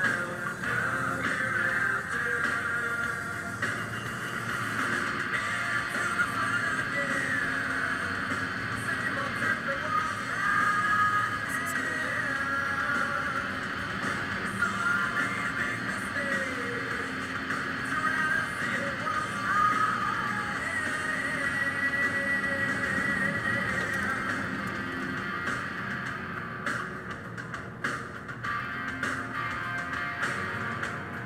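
Music from a car radio, heard inside the cabin, with a wavering melody line.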